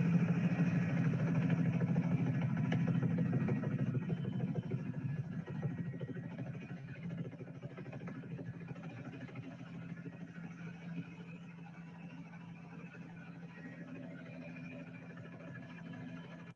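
Helicopter engine and rotor running steadily, heard from inside the cabin as a low drone with rapid beating. It grows gradually quieter over the second half.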